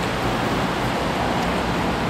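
Steady roar of road traffic, with a faint low engine hum under it.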